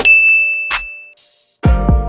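A bright single notification-style ding that rings on one high tone and fades out over about a second, followed by a brief high shimmer. Near the end a deep drum stroke comes in with a ringing tone.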